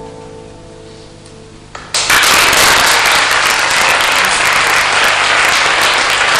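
A classical guitar's final chord rings out and fades. About two seconds in, an audience breaks into loud applause that keeps on steadily.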